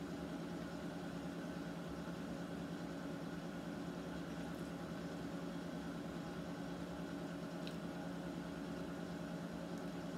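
Steady low hum of room background noise, unchanging throughout, with one faint click a little past the middle.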